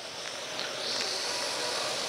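A steady high hiss comes in about half a second in and holds, over a faint low hum.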